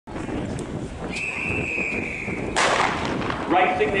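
Starting gun fired for a running race: a single sharp shot with a brief echo, preceded by a steady high tone held for about a second and a half.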